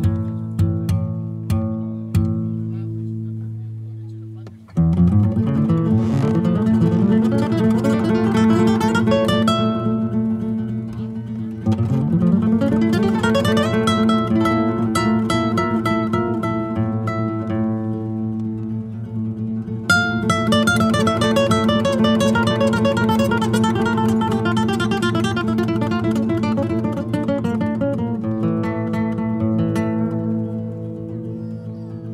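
Two classical nylon-string guitars playing a duet. A few sparse plucked notes and chords ring out at first; about five seconds in, the playing turns fast and busy, with rapid runs and repeated notes. A sharp, loud chord comes about twenty seconds in.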